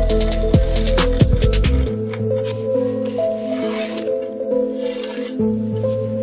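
Background music with steady sustained tones and a driving drum beat that drops out about two seconds in, leaving the softer tones.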